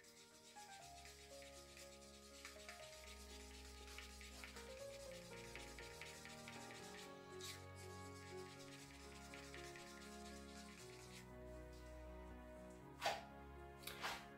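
Faint scraping of a wooden stirring stick against the inside of a paper cup as silicone oil is stirred into acrylic pouring paint. Soft background music plays under it, and there is a brief knock near the end.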